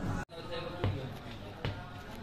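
Footsteps on wooden stairs: two dull thuds about a second apart.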